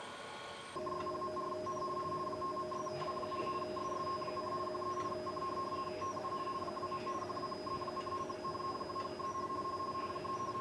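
Steady electronic signal tones from radio equipment, several pitches held together, switching on abruptly about a second in, with a short blip about once a second.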